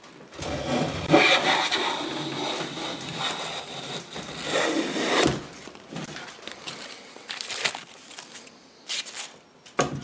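A restored vintage Stanley hand plane taking one long pass along the edge of a board, its blade lifting a continuous shaving with an even scraping hiss for about five seconds. Lighter scrapes and a couple of clicks follow as the plane comes off the wood.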